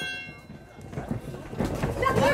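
People's voices calling out in a large hall, growing louder toward the end, with the last moment of a ringing ring bell at the very start.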